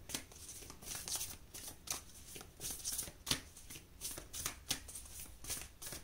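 A deck of oracle cards being shuffled by hand, a string of short rustles and snaps, several a second and unevenly spaced.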